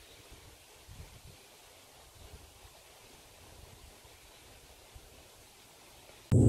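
Near silence: faint outdoor ambience with only slight, scattered rustles.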